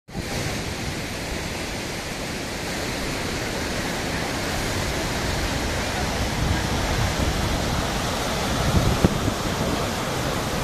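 Turbulent floodwater rushing below an open dam spillway, a steady, loud, even rush of churning water. A few low thumps sit under it near the end.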